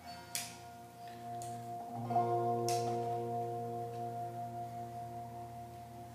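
Electric guitar through an amplifier: a chord struck about a third of a second in, then a second chord strummed about two seconds in that rings on and slowly fades, with a few brief pick or string scrapes.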